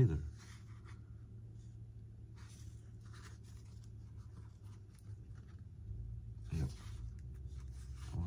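Faint, intermittent scratching of a small hand tool scraping at the foam of an RC model's tail fin, over a low steady hum.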